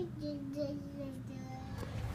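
A young child singing softly, holding two long, slightly wavering notes one after the other.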